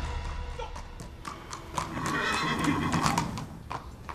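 A horse's hooves clopping on stone paving as it is ridden up and reined to a stop, with a whinny about two seconds in.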